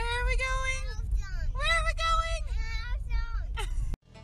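A young child singing in high, held, sliding notes, over the steady low rumble of the car's road noise inside the cabin.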